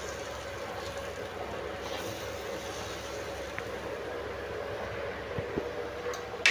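Steady, even sizzling hiss of kuzhi paniyaram frying in oil in a paniyaram pan over a gas burner.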